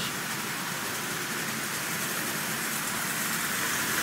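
Marx 10005 tin toy locomotive, a wind-up refitted with an electric motor, running steadily with a train of tin litho cars on tinplate three-rail track, making a continuous rolling rattle and hiss of wheels on rail. It grows a little louder near the end as the train comes closer.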